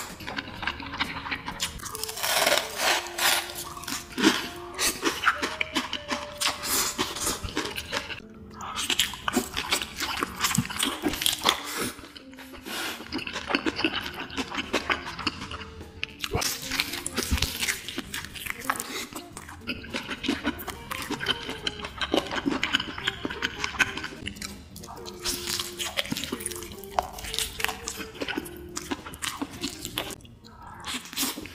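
Close-miked eating sounds: a man chewing and slurping through a mouthful of roast chicken and noodles, with many quick wet clicks and smacks. Background music with a stepped melody plays underneath.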